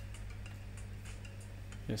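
Room tone: a steady low electrical hum with faint, fairly regular ticking, a few ticks a second.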